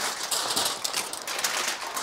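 Crinkly wrapping being pulled open and handled, a dense run of small crackles.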